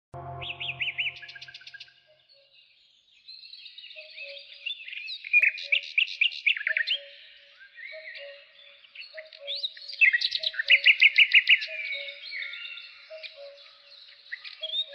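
Birdsong: several birds chirping and trilling over one another in quick, rapid runs, with a soft low two-note figure repeating steadily underneath. A brief low tone sounds at the very start, then it goes almost quiet for about a second before the chirping fills in.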